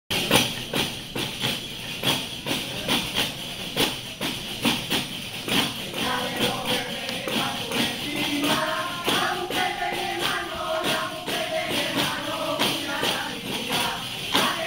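Panderetas, round frame drums with jingles, beaten in a steady rhythm for a traditional baile llano. Group singing joins about six seconds in over the drumming.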